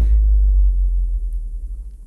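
A super deep 808 bass note sustaining and slowly fading, played soloed with a long low-end reverb (a 'sub splash') that has a boost around 500 Hz to give it some character.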